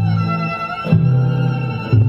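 Live band music led by bowed violins playing sustained notes over a low line whose notes change about once a second.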